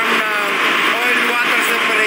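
A man speaking over a steady drone of ship engine-room machinery, with a constant hum.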